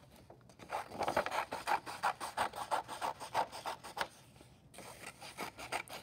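Scissors cutting through a sheet of paper in a quick run of snips, with the paper rustling as it is moved; the cutting is busiest from about a second in to about four seconds in.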